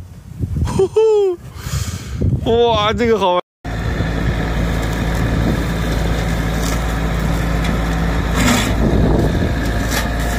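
High-pitched voices exclaiming as a heavy slab of roof snow comes down. Then, after a sudden cut, a steady mechanical drone from a truck engine and its boom-mounted hydraulic roadside hedge cutter working the brush by a guardrail.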